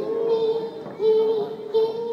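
A young girl singing a Malayalam devotional song into a microphone, holding long, steady notes with short breaks between them.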